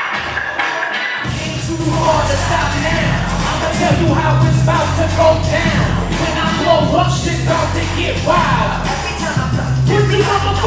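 Hip hop beat whose heavy bass comes in about a second in, with a rapper's voice over it.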